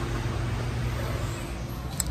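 Steady machinery noise in an indoor pool room: a low, even hum with a hiss over it, typical of the room's ventilation and air-handling equipment.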